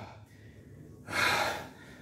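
A man breathing hard, out of breath after lifting: one heavy, noisy breath about a second in.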